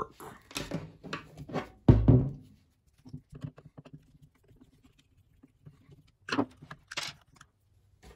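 Clicks, small scrapes and knocks from a treadmill incline motor being taken apart by hand, as a screwdriver works the screws of its plastic cover and the cover is pulled off. A single heavy knock about two seconds in is the loudest sound, followed by faint ticking and two sharper clicks near the end.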